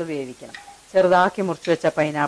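A woman speaking in Malayalam, in short phrases with a brief pause about half a second in.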